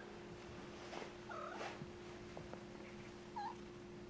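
Young kittens mewing: two short, faint mews, one about a second and a half in and another near the end, over a steady low hum.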